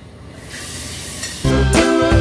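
Low room noise, then about one and a half seconds in, background music with a strong bass line starts suddenly.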